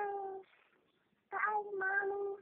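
A one-year-old toddler's high-pitched voice: two long, drawn-out calls, one trailing off about half a second in and another starting near the end.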